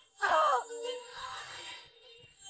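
A woman's brief, loud wailing cry a quarter-second in, followed by a fainter, breathy trailing sound.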